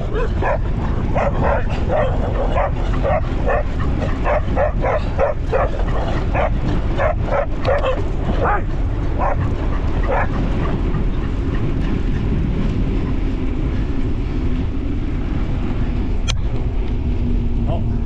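Dogs barking in a rapid run of barks that stops about ten seconds in, over a steady low wind rumble.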